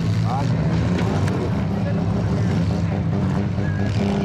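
Compact demolition derby cars' engines running hard under load as the cars push against each other, a steady, fairly level low drone.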